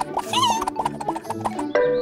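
Light cartoon background music with a short, wavering squeaky vocal noise from a cartoon character about half a second in. A held pitched sound comes in near the end.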